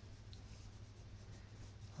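Faint scratching of a charcoal stick drawing short zigzag strokes on paper, over a low steady hum.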